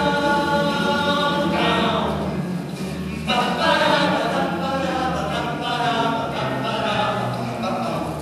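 Male vocal ensemble singing in harmony under a conductor: held chords over a low bass line, with the chord changing about a second and a half in and again just past three seconds.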